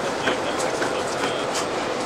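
Intercity passenger coaches rolling slowly along the platform, their wheels giving a few sharp clicks over the rail joints.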